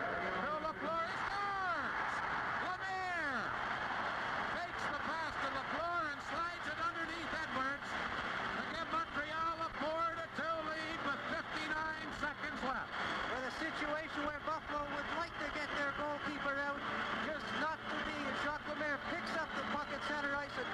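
Hockey arena crowd cheering steadily after a home-team goal, with many pitched calls that rise and fall through the din. The sound is heard as old TV broadcast audio.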